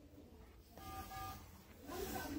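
A faint electronic beep: a steady tone of several pitches lasting about half a second, with a short break, starting about a second in, over a low steady hum.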